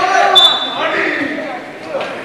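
Players' voices shouting on a football pitch, with a thud and a short, sharp whistle blast about a third of a second in, as a referee's whistle stops play after a foul.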